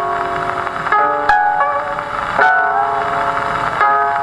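Koto trio music played from a 78 rpm shellac record on an acoustic Victrola phonograph: plucked koto notes that start in clusters and ring on over a dense shimmer of strings.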